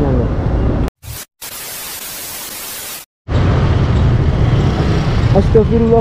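Street and wind noise on a helmet camera, cut off about a second in by an edit: a brief dropout, then about a second and a half of even static hiss, then silence, before the street noise comes back. A man's voice starts near the end.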